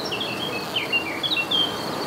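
Outdoor ambience of small birds chirping in short, quick notes that slide in pitch, over a steady high-pitched insect trill and a constant background hiss.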